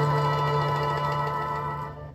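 Pop cha-cha band recording played from a vinyl LP, ending on a held chord that fades slightly and cuts off near the end.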